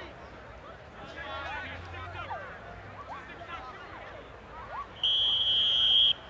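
Distant shouts from players and the sideline, then about five seconds in a steady horn blast of about a second from the game horn, signalling a time-out.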